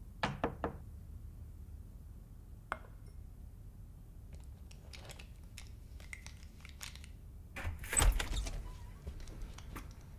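Quiet handling sounds: a quick run of clicks at the start, scattered small clicks and taps, and a louder cluster of knocks and thuds about eight seconds in.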